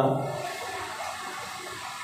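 A man's speaking voice trails off, leaving a steady hiss of background noise.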